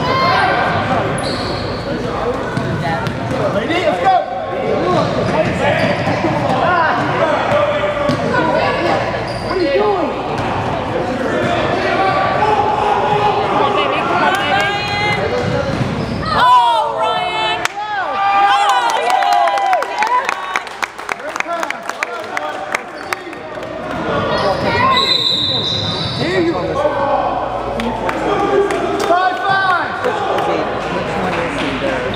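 Basketball being dribbled on a hardwood gym floor during a game, with sneakers squeaking and players and spectators calling out, all echoing in a large gym.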